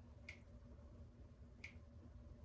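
Near silence: a low steady room hum with two faint, sharp clicks a little over a second apart.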